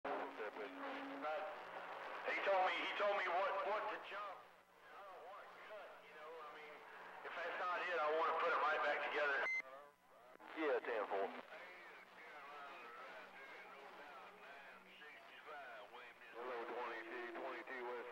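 Other stations' voices coming in over a CB radio receiver's speaker, muffled and too garbled to make out, in stretches with a steady hum under them. A short beep sounds about halfway through, followed by a brief drop-out.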